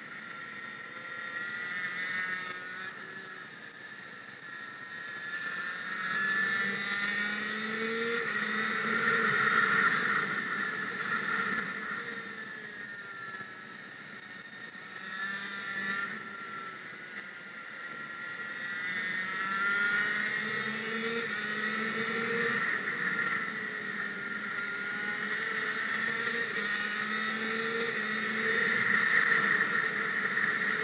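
Small, high-revving racing engine heard on board, its pitch climbing and falling again and again as it accelerates down the straights and lifts off for the corners, with wind and tyre noise underneath.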